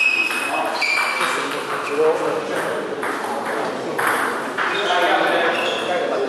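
Table tennis rally: the celluloid-type ball ticking sharply off the bats and table in quick succession, with voices in a large hall behind.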